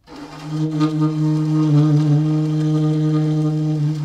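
Alto saxophone playing one long, loud low note that comes in sharply and is held steady, rich in overtones.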